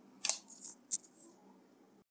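Two short, sharp clicks about two-thirds of a second apart, with a fainter click between them.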